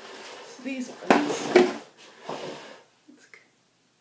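A woman's short wordless vocal sounds over a rustle of handling noise, loudest about a second in and fading out before the end.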